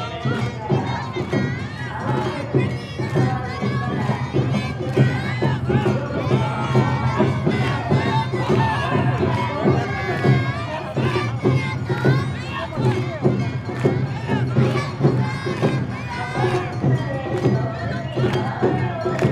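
Many voices shouting and chanting together, the dancers' calls at an Awa Odori, over the steady beat of the festival band's drums and gongs.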